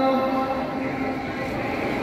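The last of a muezzin's long sustained adhan note dies away just after the start. A steady hum of a large crowd follows in the pause between phrases of the call to prayer.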